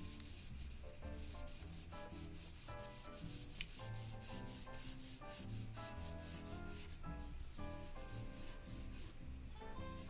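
Coloured pencil scratching on paper in rapid back-and-forth shading strokes, with faint background music underneath.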